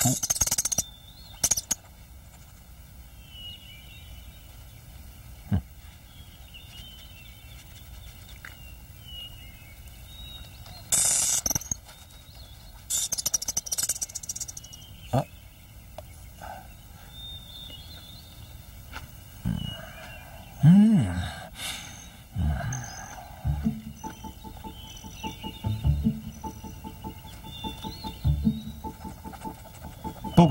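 Soft background music over a faint garden ambience with small bird-like chirps, a couple of short rustling hisses, and a few brief low vocal sounds a little past the middle.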